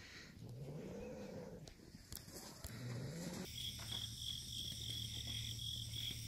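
Faint outdoor ambience with two low rising tones in the first half. From about halfway, after a sudden change, insects chirp in a steady high pulsing chorus over a low hum.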